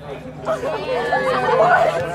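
Several people chattering close to the microphone, overlapping voices that start about half a second in and grow louder toward the end, over a steady low hum.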